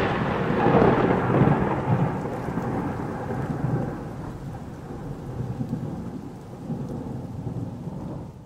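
Thunder sound effect: a long rumble with a rain-like hiss that slowly dies away over several seconds.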